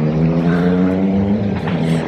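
Loud motor vehicle engine running at a steady pitch on a nearby road, the note dipping slightly near the end.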